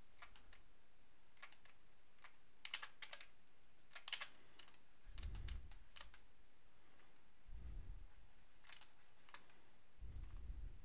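Faint computer keyboard key presses, short clicks in small scattered groups, as hotkeys are tapped during digital sculpting; two soft low thumps fall in the middle.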